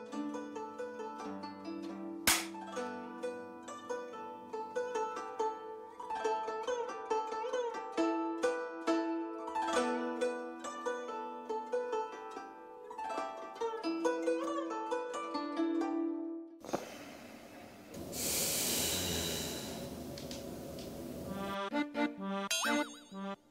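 Soft plucked-string background music, which stops about 17 seconds in; then a single long snore of about three and a half seconds.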